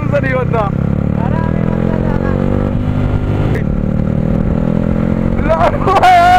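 Yamaha R15's single-cylinder engine running under way, its pitch rising gently as the bike accelerates over the first few seconds, then holding steady.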